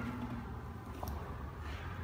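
Quiet pause: room tone with a faint low steady rumble and one soft click about a second in.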